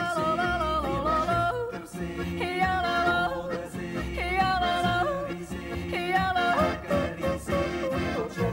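A woman yodeling a Swiss folk song, her voice jumping back and forth between low and high notes, over a folk band of double bass, accordion and guitar.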